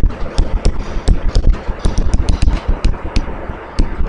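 Writing sounds: irregular sharp clicks and taps of a pen or chalk on the writing surface, about four a second, with low thuds beneath.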